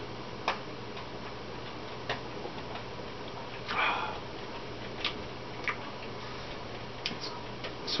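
Scattered, irregular soft clicks of lips smacking and the tongue working while tasting a mouthful of beer, with a short breathy rush about four seconds in. A low steady hum runs underneath.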